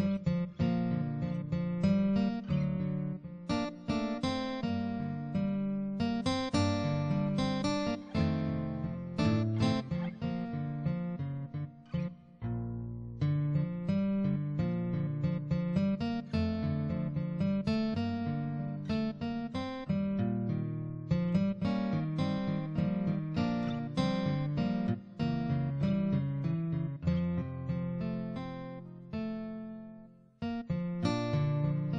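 Acoustic guitar music, plucked and strummed in a steady run of notes, with a brief break about halfway through.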